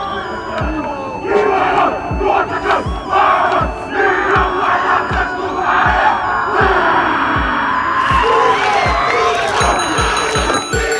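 A rugby team chanting and shouting a haka in unison, many young male voices together, over low thuds about twice a second.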